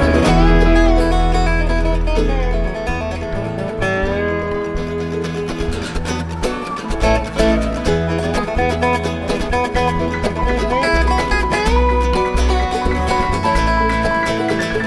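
Live bluegrass band playing an instrumental passage, with a dobro played with a slide bar taking the lead over upright bass and rhythm; some notes slide in pitch.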